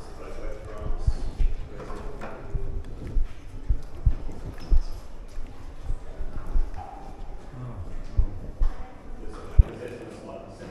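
Footsteps on a stone floor, about two steps a second at first and slowing later, with faint voices in the background.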